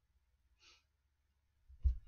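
A man breathing at a close microphone. There is a faint breath about half a second in, then near the end a short, heavier exhale that pops the microphone with a low thump.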